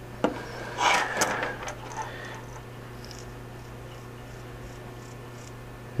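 Hand-handling noise of a small metal atomizer over a wooden table: a click, then about half a second of rubbing and small knocks, dying away within about two seconds. After that only a steady low hum remains.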